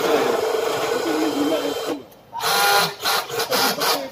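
Cordless drill running against an aluminium frame in two runs: the first lasting about two seconds from the start, the second from about halfway to near the end.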